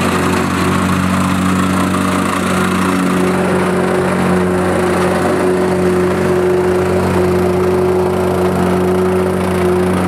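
Gas-engine vibrating plate compactor running steadily at full throttle as it compacts a bed of sand, its engine and vibrating plate making a constant hum.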